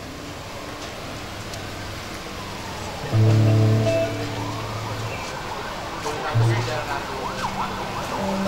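Loose amplified band instruments with no singing: mostly quiet, then a loud low held note about three seconds in that lasts about two seconds, and a shorter one past the six-second mark, with faint sliding pitches in between.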